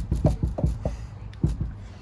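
Dull low knocks, about six at uneven spacing, from the worn pillow-ball camber top of a front coilover as the wheel is moved. The pillow ball has play, and that play is what makes the knocking heard while driving.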